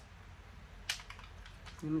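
A single short spritz from a perfume bottle's spray atomizer about a second in, followed by a few faint clicks.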